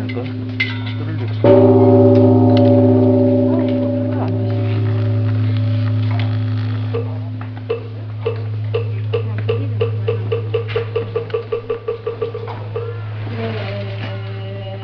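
A bell struck once about a second and a half in, ringing with several tones that slowly fade, over a steady low hum. Later a wooden moktak is knocked in a run of quickening strokes that die away, as in Korean Buddhist chanting.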